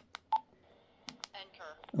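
Keypad of a Retevis RA-89 handheld transceiver: a couple of quick button clicks, then one short key beep about a third of a second in as a key is pressed in the power-setting menu. A few fainter clicks come later.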